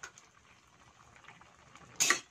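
Faint bubbling and crackling of coconut-milk vegetable stew simmering in a pan, with a brief click at the very start.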